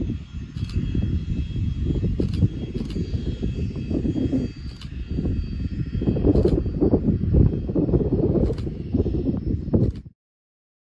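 Learjet 45's Honeywell TFE731 turbofans whining steadily at a distance under heavy gusty wind buffeting on the microphone, with a few sharp clicks.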